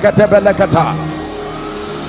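A man's voice preaching emphatically into a microphone, breaking off about a second in, leaving a low steady held tone underneath.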